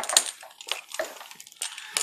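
Pressure washer's rubber high-pressure hose being uncoiled by hand: scattered light clicks and rustles as the coils and fittings are handled.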